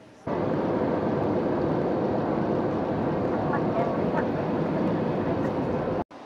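Loud, steady jet airliner engine and airflow noise heard inside the cabin. It starts abruptly about a quarter second in and cuts off at the end.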